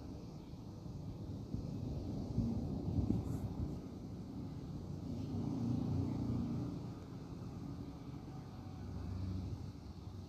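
Low background rumble that swells and fades a few times.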